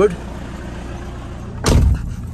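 Toyota Hiace diesel engine idling with a steady low rumble, heard from the driver's seat, just after being revved. Near the end the driver's door slams shut with a loud thud.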